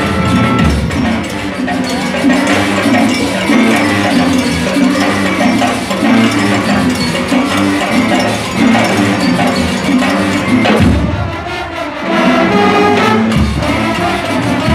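Latin-style marching brass band playing: brass with percussion keeping a rhythmic beat. It thins briefly about eleven seconds in, then the full band comes back in.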